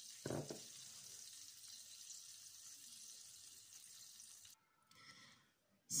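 Egg-dipped banana bread roll frying in hot butter in a pan, a faint steady sizzle, with a short thump just after the start. The sizzle cuts off about four and a half seconds in.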